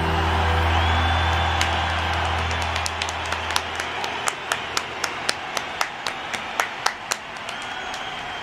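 The last low sustained note of a live rock concert recording fades out under the concert crowd's cheering and applause. From about three seconds in, a person claps close by, about three claps a second.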